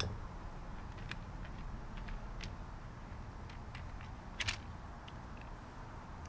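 Light, sparse plastic clicks and taps as the screwed-together plastic housing half of a Burndy Patriot battery-powered hydraulic crimper is lifted off, with a sharper double click about four and a half seconds in. A low steady rumble runs underneath.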